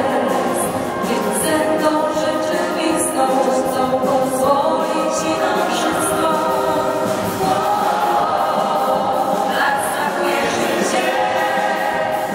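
A large choir of schoolchildren and teachers singing a song together, with a few adult voices leading on microphones.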